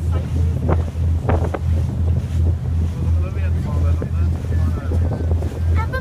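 A tour boat's engine running under way, a low, steady drone with an even pulse, under wind buffeting the microphone and a few sudden splashes or gusts in the first second and a half.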